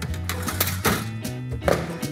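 Background music playing, with a few knocks as a baking tray is slid into an oven and the oven door is shut. The last and loudest knock comes near the end.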